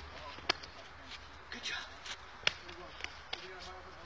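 A handful of sharp slaps and knocks from a staged hand-to-hand fight, hands and feet striking arms and clothing, the loudest about two and a half seconds in, with faint voices between them.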